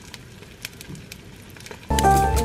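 Table knife spreading a green spread onto toast, making a few faint scrapes and clicks over a low, steady background hum.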